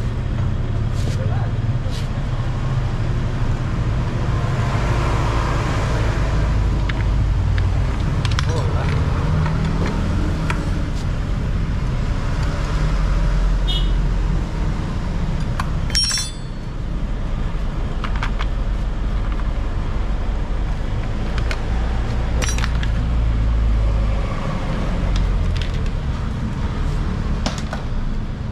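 A motor vehicle engine running with a steady low hum, with a few sharp clicks, the loudest about halfway through.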